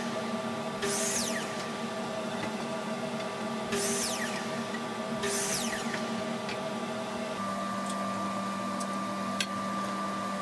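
Woodworking machinery running steadily in a shop, with four brief high hissing sweeps that each fall in pitch during the first half. About seven seconds in, the hum shifts to a different steady tone.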